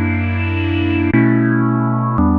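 AIR Mini D software synthesizer, an emulation of the Minimoog Model D, playing sustained polyphonic chords, with a chord change about a second in. The low-pass filter cutoff is being swept, so the upper tone brightens and darkens as the chords sound.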